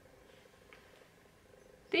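Near silence: quiet room tone with a faint steady hum.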